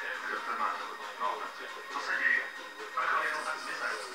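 Muffled speech and music, as from a television playing in the room.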